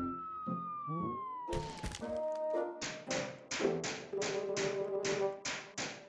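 A falling whistle over the first two seconds and a single knock, then a quick, even run of about ten hammer taps, roughly three a second, over light background music.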